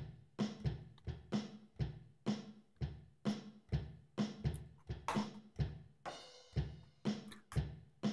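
Music with a drum-kit beat, about two hits a second, playing quietly from the computer as a YouTube video plays.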